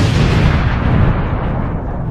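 Explosion sound effect: a sudden loud blast that begins right after a short silence, deep and noisy, slowly fading over about two seconds.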